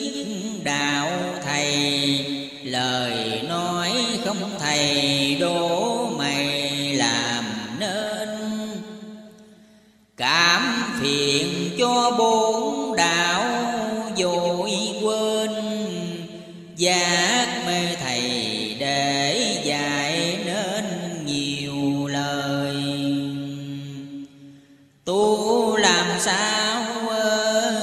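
Melodic devotional chant-style music, a gliding melody over sustained low notes, in three long phrases. The first two fade out and the next starts abruptly, about ten seconds in and again a little past the middle; the third fades out near the end, with the next phrase starting just before the end.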